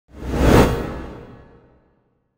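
A whoosh sound effect for a logo reveal, with a deep rumble under it, swelling to a peak about half a second in and then fading away over the next second.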